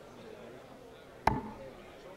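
A steel-tip dart striking a Winmau bristle dartboard: a single sharp hit about a second and a quarter in, landing in the 20 segment.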